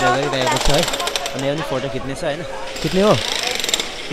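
People talking in a street crowd over a fast, even mechanical rattle like a pneumatic hammer, heard in two stretches of about a second and a half each.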